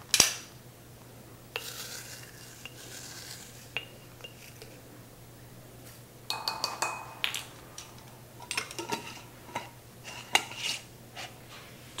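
Scattered clinks and taps of a plastic measuring spoon against a glass spice jar and a bowl, with a soft rustle as dried basil is scooped out and tipped in. A cluster of sharper, ringing clinks comes about six seconds in.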